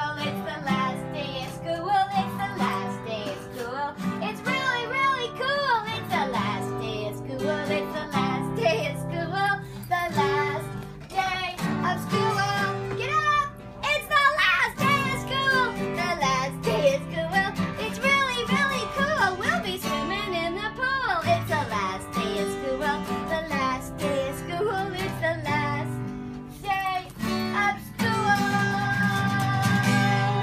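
A woman singing a song while accompanying herself on strummed guitar.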